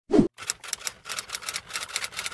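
Logo intro sound effect: a short low thump, then a rapid run of sharp clicks, about seven a second, like fast typing.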